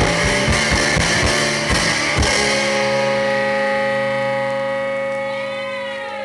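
Live rock band with electric guitars and drums: the drumming stops on a final hit about two seconds in, and the guitars and bass ring on as a held chord that slowly fades. Near the end some of the ringing notes bend down in pitch.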